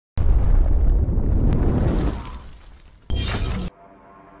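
Logo-reveal sound effects: a sudden loud boom-and-shatter hit that dies away over about two seconds, then a second short hit about three seconds in that cuts off sharply.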